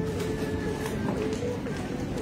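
Low background voices in the shop, with light rustling and handling of denim jeans.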